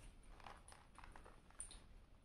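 Near silence, with faint light rustles and ticks as a small cardboard box is handled and opened.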